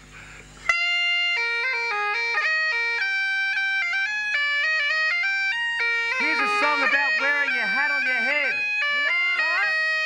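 Highland bagpipes striking up about a second in: a steady drone under a melody of held notes that step up and down. From about six seconds in a man's voice talks over the pipes, drowned out by them.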